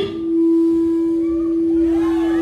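Electric guitar feedback through the amplifier as the band stops: a single loud, steady tone held on, with fainter wavering tones rising and falling above it in the second half.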